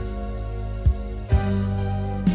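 Instrumental background music: held chords over a soft beat about once a second, with a new chord coming in about one and a half seconds in.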